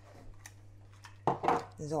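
Kitchen utensils clinking and clattering against a mixing bowl as the dough mixing begins: a short clatter a little over a second in, over a faint steady hum.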